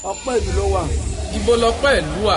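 A person speaking in a slow, drawn-out delivery over a steady low rumble.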